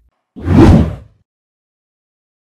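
A loud whoosh sound effect: a single rush of noise that swells up about a third of a second in and dies away within a second. It marks an edit transition to a logo card.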